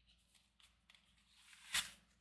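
Quiet room tone with a few faint mouth clicks, then a person's short breath in near the end.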